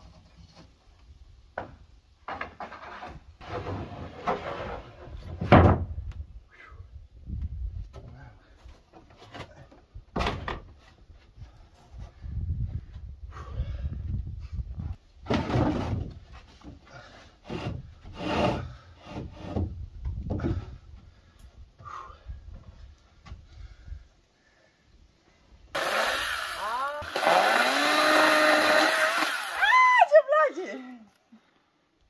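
Hammer blows nailing wooden roof sheathing boards, coming in irregular bursts of strikes. Near the end, after a brief pause, a chainsaw engine runs, its pitch rising and falling as it is revved.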